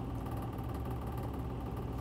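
A steady, low mechanical hum with no breaks or changes.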